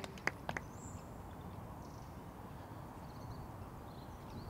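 Quiet outdoor ambience with a steady low background rumble. A few scattered hand claps sound in the first half-second, and a faint short bird call comes about a second in.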